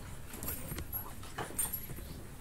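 Room noise: scattered short knocks and clicks over a low rumble, with a few faint high tones.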